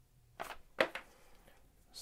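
Two short sharp clicks of small hard plastic model-kit parts being handled, the second a little louder.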